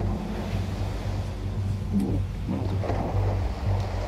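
Steady low wind rumble on the microphone over the wash of water churned by a swimming hippo at the surface.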